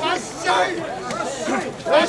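Chatter of many men's voices overlapping, talking and calling out at once, from the crowd of mikoshi bearers.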